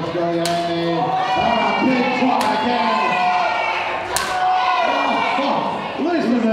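A small crowd shouting drawn-out calls. Three sharp smacks land about two seconds apart, strikes traded in the corner of a wrestling ring.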